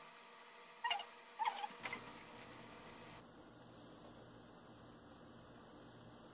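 Three short squeaks within about a second, from a knife working the cream on top of a layer cake, then faint room noise.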